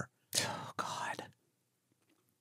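A person whispering: two short, breathy whispered phrases in the first second or so.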